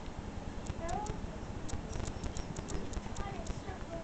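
Quick irregular clicks and taps of a kitten and a hand handling the camera close to its microphone, with a couple of short, faint, falling calls from the kitten.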